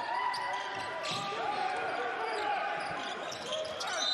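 Basketball game sound on a hardwood court: the ball bouncing on the floor amid players' voices and movement, with little crowd noise.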